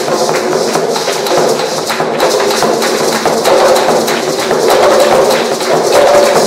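Hand-drum ensemble of congas with a rope-laced double-headed drum and a smaller rope-laced hand drum, played together in a fast, dense, steady rhythm with hand clapping.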